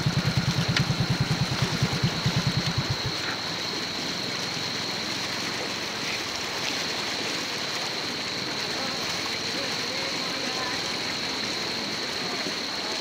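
A motor thudding at a rapid, even beat, which cuts off abruptly about three seconds in. After that, a steady rush of flowing flood water with a thin, steady high whine over it.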